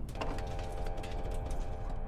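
Audio from the music video: a quick run of ticking clicks over a steady held tone, mechanical and robot-like.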